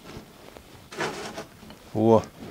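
A brief scrape of a rusty steel wheel hub being shifted into place on a steel plate, about a second in.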